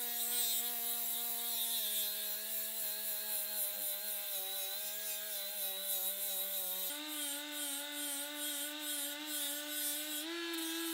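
Milwaukee M12 cordless die grinder set to about 15,000 RPM, a 60-grit aluminum oxide flap disc grinding through the mill scale on raw hot-rolled steel: a steady motor whine over the rasp of the disc on the metal. The whine steps up in pitch about seven seconds in.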